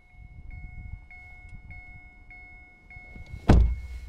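A car's door-open warning chime dings steadily, about every 0.6 s, over a low rumble. About three and a half seconds in, a car door shuts with a loud thump.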